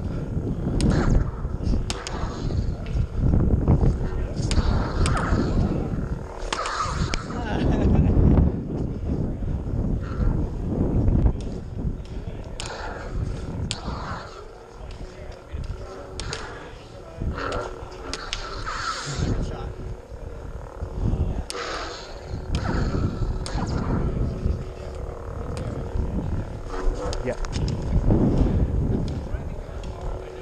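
Combat lightsaber blades swinging and striking each other in a duel, with repeated sharp clacks at the hits over a steady low rumble of movement on the helmet-mounted microphone.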